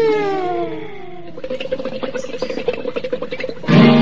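Music: a song sung in Malayalam. A sung note slides downward and fades over the first second or so, then comes a quieter stretch with a steady held tone and light clicking, and the voice comes back loudly just before the end.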